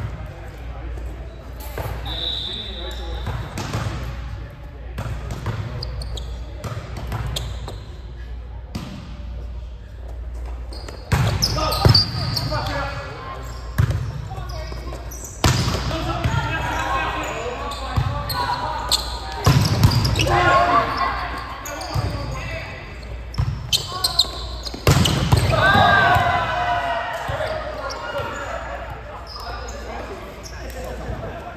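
A volleyball rally in a large echoing gym. After a quieter stretch of background chatter, the ball is hit with a string of sharp slaps from about ten seconds in, mixed with players' calls and shouts.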